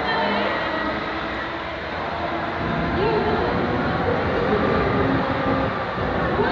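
Large swinging pendulum ride in motion, a steady mechanical rumble mixed with the voices of the people around it.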